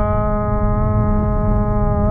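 A man's voice holding a long, steady-pitched hesitation "uhhh", over the steady low road and wind noise inside a car cabin at highway speed.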